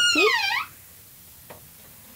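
A woman's voice drawing out the word "peek" with a swooping pitch. It is followed by quiet room tone with one faint click about one and a half seconds in, as a camper van's sliding shower door is opened.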